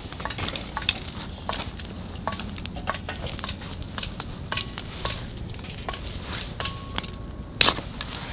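Wood fire crackling and popping as split firewood burns, with irregular sharp snaps throughout. There is a short thin whistle and one louder pop near the end.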